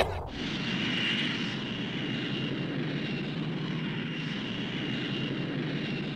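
Steady jet-like rushing whoosh with a faint high whine running through it, swelling slightly about a second in: a cartoon sound effect of characters flying through the air.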